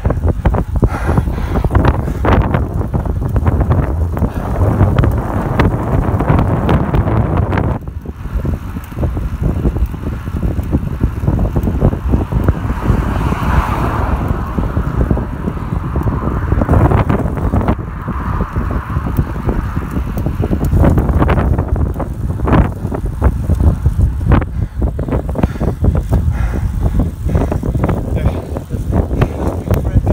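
Wind buffeting the microphone of a camera on a moving road bicycle, a steady low rumble throughout. About halfway through, a car passes close alongside, its tyre noise swelling and fading.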